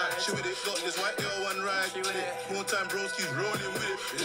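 UK rap track: a male voice raps over a beat of quick hi-hats and deep bass notes that slide down in pitch.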